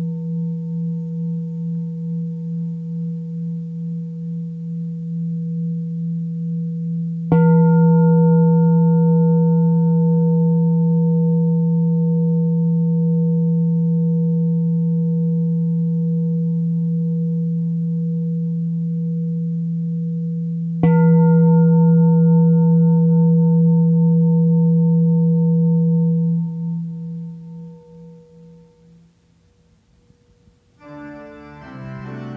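A bell struck twice, about 7 and 21 seconds in, each stroke a sharp hit followed by a long, low ringing tone that slowly wavers as it dies away, with the ring of an earlier stroke still sounding at the start. The bell marks the beginning of a period of silence, and the last ring fades out near the end.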